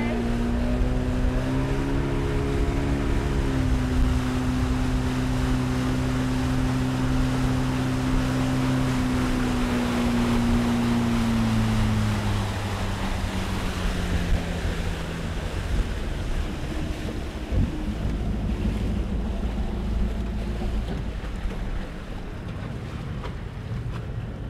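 Small motorboat's engine running steadily under way, with wind and water rushing past the hull. About halfway through, the engine pitch falls over a few seconds as the boat throttles back, leaving a low idle under the water and wind noise.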